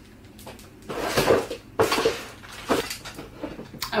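Hair styling tools and their cords being handled and plugged in, heard as a few separate clatters and knocks with some rustling.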